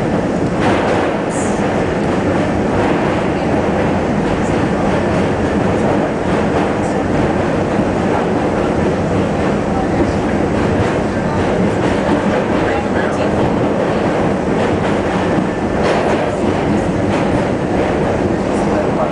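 R68 subway train running over a steel bridge, heard from inside the front car: a loud, steady rumble of wheels on rails, with scattered clicks from the track.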